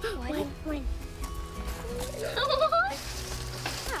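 Background music with steady held notes under excited, wordless exclamations from the onlookers, including a long rising 'ooh' about two seconds in.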